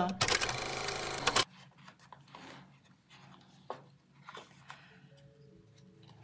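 A loud, dense burst of sound lasting just over a second at the start, cutting off sharply. After it come faint rustles and small clicks of paper and card being handled and pressed onto a notebook's pages.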